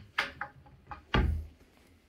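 A small click, then a dull wooden thud about a second in: a cupboard door being pushed shut.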